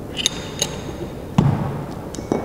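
Steel open-end wrench clinking against the tapper's spindle as it is fitted onto the flats: a few light metallic pings, then one sharp knock a little past halfway.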